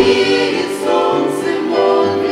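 A small group of women singing a Russian Christian hymn together in harmony, holding long sustained notes.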